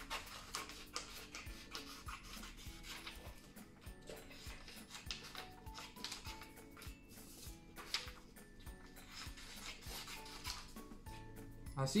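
Scissors snipping through sheets of paper with paper rustling, a scatter of short irregular cuts and handling sounds, over quiet background music.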